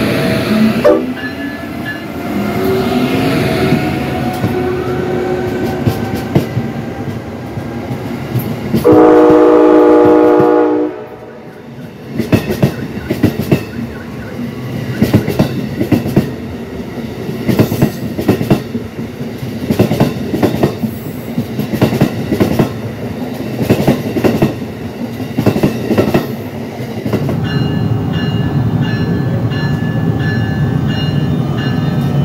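Amtrak electric train, a Siemens ACS-64 locomotive with Amfleet coaches, passing at speed with a whine from its motors at first. A long train-horn chord sounds about nine seconds in and lasts about two seconds, followed by a steady clatter of wheels on the rails as the coaches go by.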